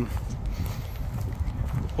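Wind rumbling on the microphone, with soft irregular thumps.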